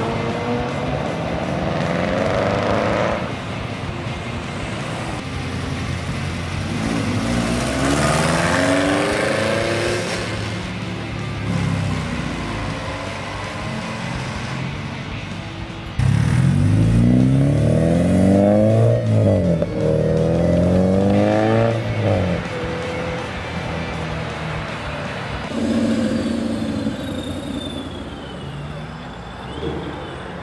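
Several cars pulling away and accelerating in turn, each engine revving up in rising pitch and dropping back at gear changes. The loudest run starts suddenly about halfway and climbs through several shifts.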